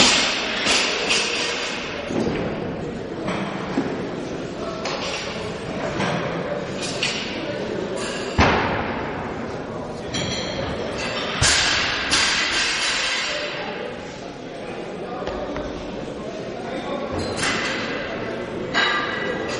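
Sharp thuds and bangs echoing in a large hall, about nine of them at uneven gaps, the loudest about eight seconds in, over background voices.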